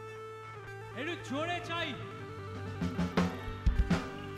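Live band music led by an electric guitar playing sustained notes that slide and bend in pitch, with a few drum hits near the end.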